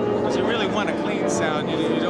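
A man talking, with the last held piano notes dying away at the start.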